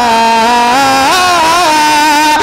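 A man's solo voice singing a naat, holding one long wordless melismatic note. The note steps up in pitch about a second in and drops back near the end.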